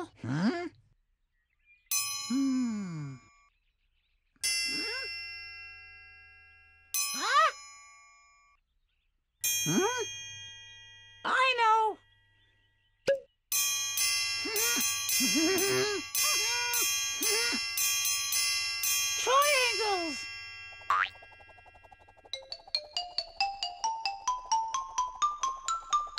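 Cartoon sound effects and children's music: a series of short sliding-pitch sounds with ringing chime-like notes, then a fuller musical passage, ending in a quick rising run of short bell-like notes.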